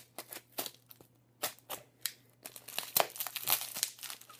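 Packaging being handled and unwrapped: a run of short crinkles and crackles, scattered at first and denser over the last second and a half.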